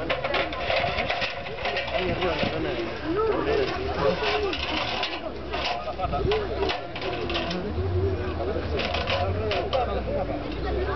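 Indistinct voices of several people talking at once.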